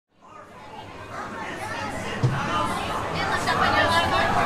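Crowd chatter, fading in from silence over the first second or so, with a single short knock about two seconds in.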